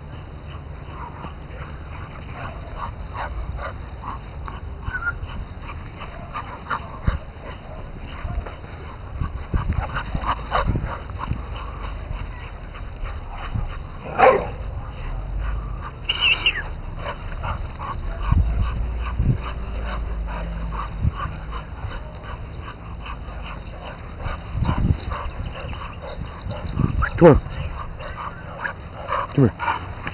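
A German Shorthaired Pointer and a pit bull playing fetch, with a short bark about fourteen seconds in and a high short yelp soon after, over scattered knocks and a low steady rumble.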